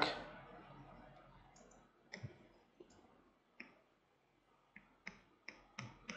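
Faint, irregular clicks, about eight of them from about two seconds in, from the computer controls being worked while brushing over a layer mask in photo-editing software.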